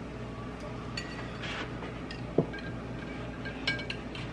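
A few light clinks of a metal spoon against a drinking glass as an egg is lowered into a glass of dye, with one duller tap about two and a half seconds in, over a low steady hum.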